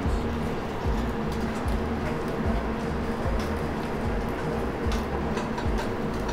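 Steady machine hum of a busy restaurant kitchen under background music, with light sharp clicks every second or so as metal tongs turn meat on the grill.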